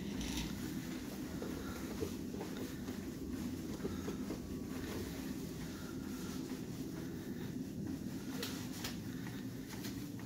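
Steady low room hum with faint rustling and a few soft clicks from chest compressions on a CPR training manikin covered by a sheet and a plastic drape.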